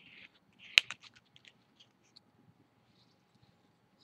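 Paper being folded and creased by fingers: soft crinkling near the start and again just before one second, with one crisp snap of the paper about three quarters of a second in, followed by a few faint ticks.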